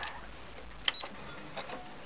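A few light mechanical clicks from a Brother SQ9000 sewing machine with its motor stopped, the sharpest about a second in, as its controls are worked at the end of the seam.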